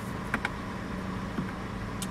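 Steady low hum and hiss of a car cabin's background noise, with two faint clicks, one early and one about halfway through.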